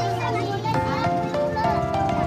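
A group of children chattering and calling out over background music with steady, sustained melodic notes.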